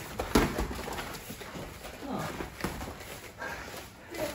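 Padded boxing gloves landing in sparring: several sharp smacks, spaced irregularly. The loudest comes just after the start.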